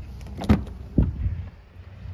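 Rear door of a 2023 Honda Ridgeline pickup being opened: two sharp clunks about half a second apart over a steady low rumble.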